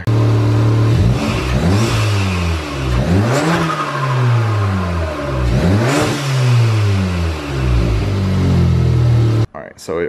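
Audi S3's turbocharged 2.0-litre four-cylinder running and being revved several times, the pitch rising and falling with each blip. There is a loud turbo swish as the throttle closes, made louder by the open cone-filter intake while the stock diverter valve is still fitted. The sound cuts off abruptly near the end.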